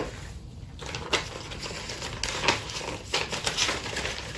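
Paper ballot sheets being handled and torn apart by hand: rustling with irregular short crackles and ticks.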